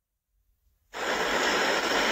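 Complete silence for about the first second, then a steady hiss of background noise from an outdoor live microphone feed.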